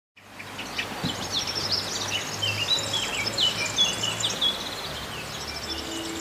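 Birdsong: several birds singing in quick, high chirps and trills over a steady background hiss, with a faint low hum underneath. It fades in at the very start.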